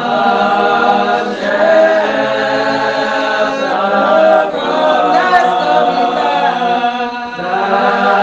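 Spiritual Baptist congregation singing a slow hymn unaccompanied, many voices holding long, drawn-out notes that slide from one pitch to the next.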